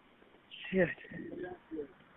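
Phone-line audio from a 911 call: a man swears once, then faint low muffled murmuring comes over the line.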